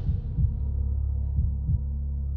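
Low droning background score with a few soft bass thumps in a heartbeat-like rhythm, no higher sounds over it.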